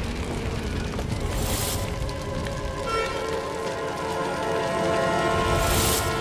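Dramatic background music, with held notes coming in about halfway through, over a low rumbling fire sound effect. A rushing swell rises twice, once early and once near the end.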